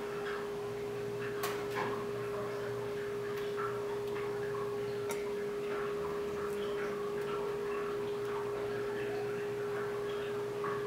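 Small stainless saucepan of banana blossom simmering, with scattered soft pops and ticks from the bubbling over a steady, even hum.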